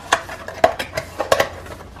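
Paperboard gift box and cellophane-wrapped stickers and keychains being handled: a handful of short crinkles and light knocks.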